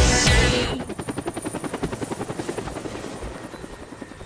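The song's music cuts off less than a second in, leaving a helicopter's rotor chopping in a rapid, even beat that fades away.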